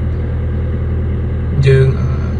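Steady low hum of a car running, heard from inside its cabin. A man's voice comes back near the end.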